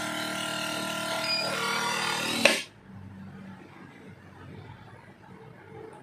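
Electric pump of a countertop vacuum sealer running steadily as it draws air out of a plastic bag of meat. It cuts off with a sharp click about two and a half seconds in, leaving only a faint hum.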